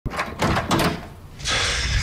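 A door being opened and shut: a few quick knocks and clatters in the first second, then a short rush of noise that lasts about half a second.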